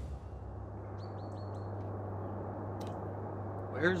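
Outdoor ambience: a steady low hum under a soft hiss, with a bird chirping four quick times about a second in.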